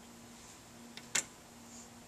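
Two short mouth clicks about a second in, the second louder, as a pipe smoker's lips smack on and release the pipe stem, over a faint steady hum.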